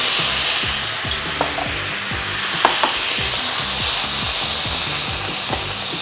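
A splash of soju hits a hot nonstick wok of onions and red peppers and sizzles, loudest in the first second, then settles into a steady frying sizzle as the vegetables are stirred. A few light clicks of the spatula against the pan come through.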